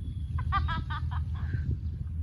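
A quick run of short animal calls, like clucking, about half a second in, over a steady low rumble.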